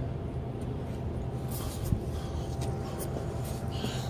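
Steady low rumble of wind and tyre noise from a bicycle rolling along an asphalt path, with one short click about two seconds in.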